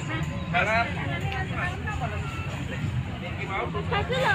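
Voices of people talking in the background over a steady low rumble.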